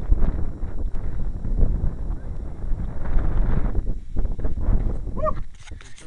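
Wind buffeting and handling noise on a handheld camera's microphone as it is carried, with a dense low rumble and irregular knocks. A short voice-like sound comes near the end.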